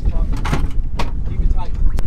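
Steady low wind rumble on the microphone with three sharp knocks about half a second to a second apart, from a handheld camera bumping against a boat's console and seat cushion.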